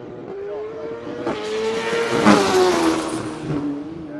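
Racing motorcycle engine at high revs passing by: the pitch climbs slowly, the sound is loudest a little past halfway, then the pitch drops and it fades as it goes away.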